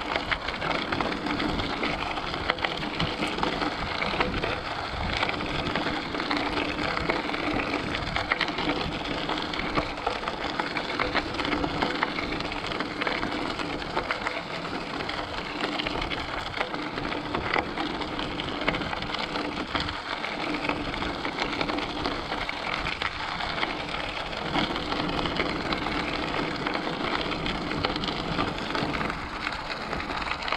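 Bicycle tyres rolling over a loose gravel trail: a steady, dense crackle and crunch of small stones, with a faint low hum underneath.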